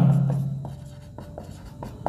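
Marker pen writing on a whiteboard: a series of short, faint strokes and ticks as letters are written.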